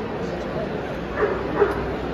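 A dog yipping and howling, starting about a second in, over the chatter of a busy hall.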